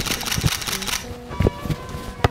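A soccer ball being touched and kicked with a shoe on artificial turf: a few dull thumps of foot on ball, over background music.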